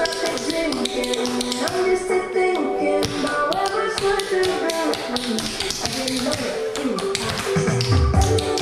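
Tap shoes striking a hard tile floor in quick, dense rhythms over a recorded pop song, with a deep bass line coming into the music near the end.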